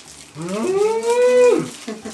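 A person's long hummed "mmm~" of delight while tasting food. It rises in pitch, holds, then drops away near the end.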